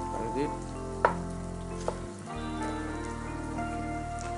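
Chef's knife knocking on a wooden chopping board while slicing a green bell pepper: two sharp knocks, about a second and two seconds in. A steady sizzle, as from food frying in a pan, runs underneath.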